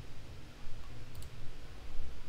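A computer mouse click about a second in, as a chart menu item is selected, over a faint low hum.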